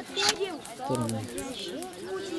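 Several people talking over one another in the background.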